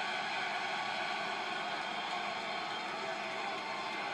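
Large arena crowd making a steady roar of noise, heard through a TV speaker.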